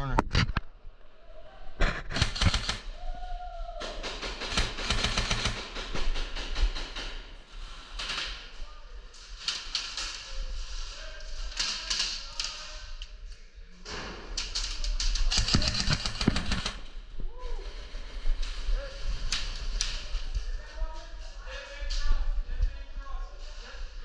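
Airsoft guns firing in several full-auto bursts of one to two seconds each, with scattered knocks of BBs hitting plywood walls and indistinct shouting between them.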